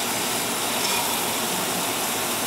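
Pieces of meat sizzling steadily on a hot stovetop griddle as more are added from a bowl.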